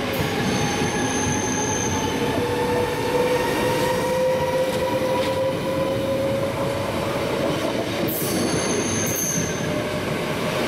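NS double-deck electric train rolling past close by, a steady rumble with a whine that rises slowly in pitch. Brief high-pitched squeals come about a second in and again near the end.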